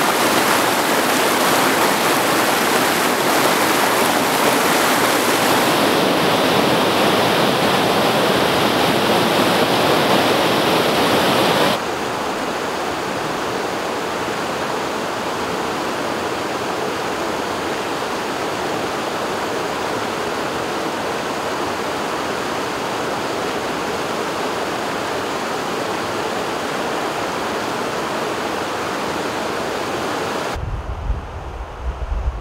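Mountain river rapids rushing over boulders, a steady wash of water noise that becomes noticeably quieter about twelve seconds in.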